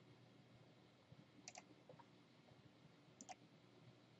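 Near silence, with faint computer mouse clicks: a quick double click about one and a half seconds in and another just over three seconds in.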